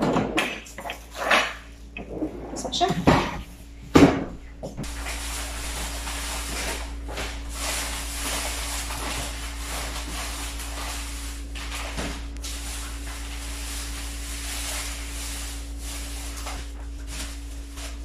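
Kitchen work at the counter: a few knocks and handling sounds with brief voice, and one sharp loud clunk about four seconds in, then a steady hiss for the rest.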